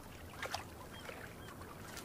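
Faint short animal calls, a few chirps in quick succession, over a soft steady hiss, with one brief sharper call about half a second in.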